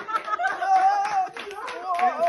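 A group of people clapping their hands, with a voice calling out in long, drawn-out, wavering tones over the claps.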